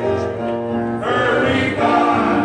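A gospel choir of male voices singing, a man's voice at the microphone among them, holding sustained notes that change pitch every half second or so.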